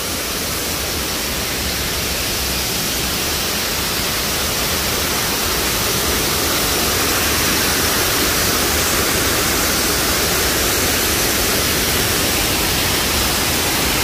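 Man-made waterfall: a sheet of water pouring off an overhead ledge and splashing into fast, churning water in a concrete channel, a steady rushing noise that grows a little louder over the first few seconds.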